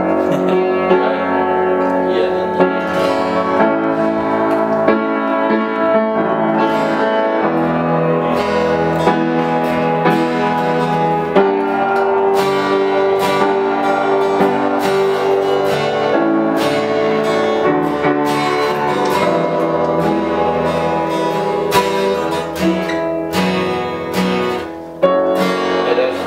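Acoustic guitar strummed along with an upright piano playing chords in an informal jam. The playing turns uneven and quieter over the last few seconds.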